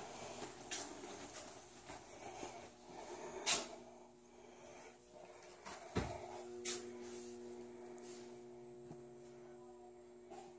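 A few scattered sharp knocks and clicks, the loudest about three and a half seconds in and a dull thump at six seconds. From about six seconds in, a faint steady hum with several pitches carries on.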